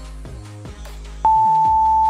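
Electronic background music, then about a second in a single loud, steady electronic beep lasting about a second: an interval-timer tone marking the end of a work interval.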